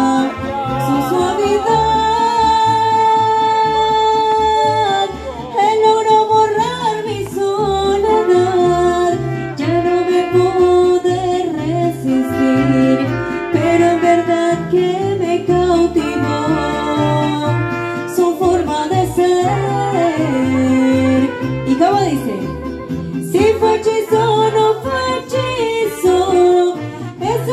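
Live mariachi band with a woman singing lead over strummed guitars and a steady, rhythmic bass line. About two seconds in she holds one long note for about three seconds.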